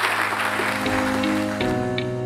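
Audience applause dying away in the first moments as background music with held notes takes over.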